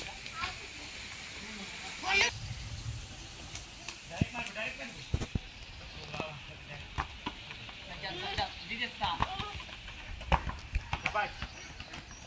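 Boys shouting and calling out in short bursts during a game of football on a dirt yard, with a few sharp knocks of a rubber ball being kicked.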